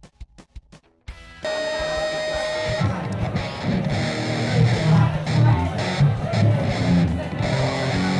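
Rock music with electric guitar starting suddenly after a second of near silence broken by a few clicks: a held guitar note first, then the full band with heavy bass and drums from about three seconds in.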